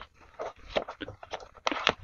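Paper dollar bills being counted by hand: short papery flicks and rustles as each bill is peeled off the stack, several a second at an uneven pace.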